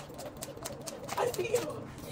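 Jump rope slapping pavement in a quick, even rhythm of about four sharp clicks a second; about a second in, a woman's voice and laughter take over.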